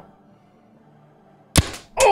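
Paintball marker firing a single shot about a second and a half in: one sharp pop with a short tail.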